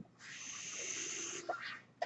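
A mechanical ventilator delivering a breath: a hiss of air lasting about a second, then a shorter, fainter hiss.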